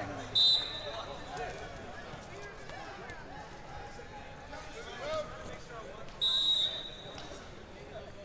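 A referee's whistle sounds twice in short blasts, once about half a second in and again, a little longer, just after six seconds, over a steady murmur of spectators' chatter in a large hall.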